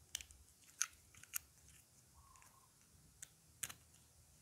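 Hard plastic toy food pieces (wafer, cone and cookie disc) clicking and tapping together as they are handled and fitted, a handful of sharp clicks with the loudest about a second in, and a brief squeak of plastic rubbing midway.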